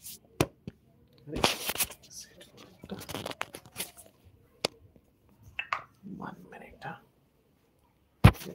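Handling noise of a phone held and moved around by hand: sharp knocks and clicks with bursts of rubbing and rustling on its microphone.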